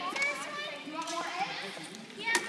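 Background chatter of young children and adults, several voices at once with no clear words.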